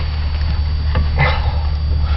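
Steady low rumble inside the cabin of an armored military vehicle, with a brief rustle and light knocks of body armor and gear as the wearer shifts in the cramped seat.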